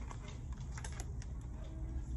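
Light clicks and taps of paper planners being handled and their pages and covers flipped, several in quick succession near the middle, over a steady low hum.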